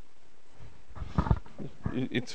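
A man's low, breathy groan close on a handheld microphone, starting about half a second in, with two sharp pops about a second in.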